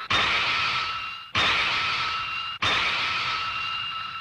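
Three stylised anime fight sound effects, each a sudden whooshing burst with a ringing tone that fades, about 1.25 seconds apart.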